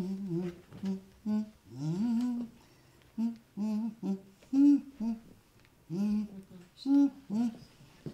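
A voice humming a simple tune in short, separate notes, with brief pauses between the phrases.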